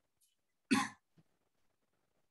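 A man coughs once, a single short burst about two-thirds of a second in.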